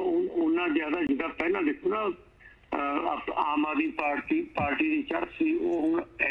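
A caller talking over a telephone line, the voice thin and narrow.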